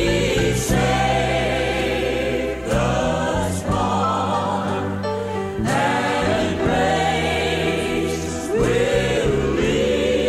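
Background music: a choir singing a gospel hymn over sustained instrumental accompaniment, in long phrases.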